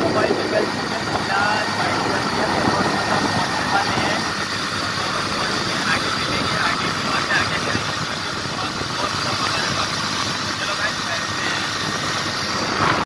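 A motorcycle riding at road speed: a steady mix of engine and wind noise, with a man's voice coming through faintly now and then.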